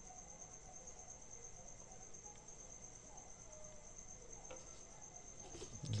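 Faint, steady high-pitched trill over quiet room noise, insect-like.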